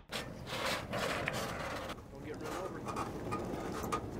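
Indistinct talking with a few light knocks, over a steady background hiss.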